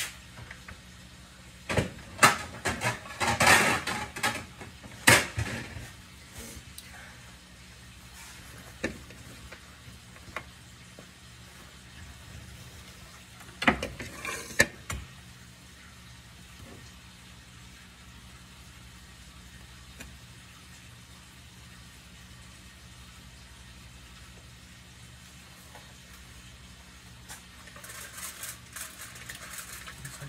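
Kitchen clatter of dishes and utensils being handled: quick runs of clicks and knocks a couple of seconds in and again around the middle, over a steady low hum.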